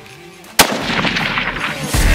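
A single rifle shot from a scoped bolt-action hunting rifle, a sudden sharp crack about half a second in, with sound carrying on after it.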